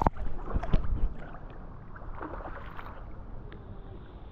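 Swimming-pool water splashing and lapping against a waterproof action camera held at the surface. Heavy, muffled buffeting in about the first second, then a steady wash of water.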